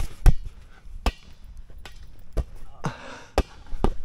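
A string of dull thumps from bouncing on a trampoline mat and hitting a large inflatable play ball, about seven in four seconds at an uneven pace.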